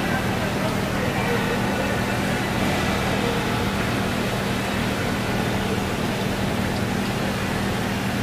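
Steady background noise with a constant low hum and faint, indistinct voices.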